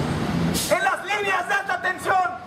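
A man's voice amplified through a megaphone with a handheld corded microphone, speaking in short phrases.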